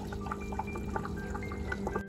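Water trickling and dripping in small, irregular plinks over a steady low electric hum.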